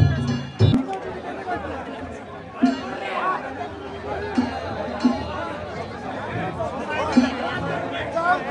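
Festival crowd chatter, many voices talking and calling out at once. In the first second the danjiri's drum and gongs strike a couple of last beats and stop.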